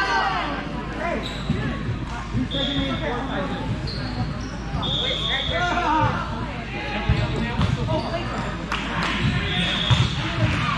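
Volleyball gym ambience: many voices calling and chattering, balls thumping on the hardwood court, and several short high squeaks, typical of sneakers on the court floor.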